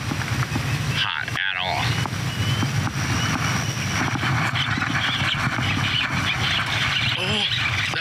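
Steady wind rumble on the microphone, with brief murmured voice sounds about a second in and near the end.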